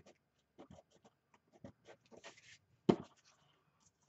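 Paper tissue rubbing and rustling against cardstock, wiping off excess glue, with scattered small handling clicks. One sharp tap about three seconds in.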